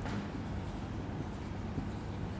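Marker pen writing on a whiteboard: faint, steady scratching of the felt tip across the board.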